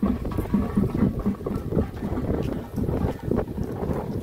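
Wind buffeting the microphone, a heavy low rumble with irregular low thuds running through it.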